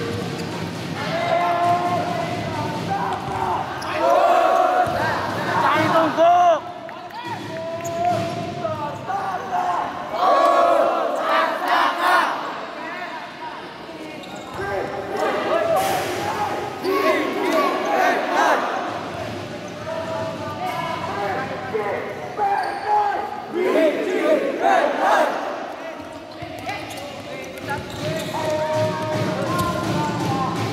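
Futsal ball being kicked and bouncing on an indoor court, sharp thuds now and then, under a steady mix of players and supporters shouting.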